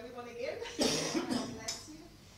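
A person coughs loudly about a second in, between stretches of a voice talking.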